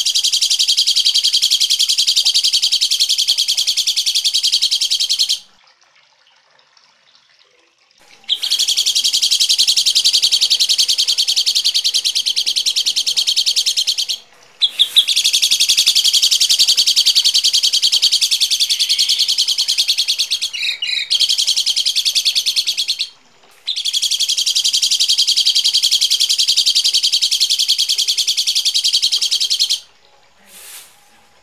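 A songbird's harsh, rapid chattering call, repeated in long unbroken runs of several seconds. The runs pause briefly about five seconds in (for roughly three seconds), and again for a moment about 14 and 23 seconds in.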